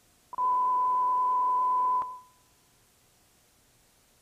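A steady electronic test tone on one held high pitch, starting a moment in and cutting off sharply about two seconds in. It is heard over dead air during a broadcast technical fault.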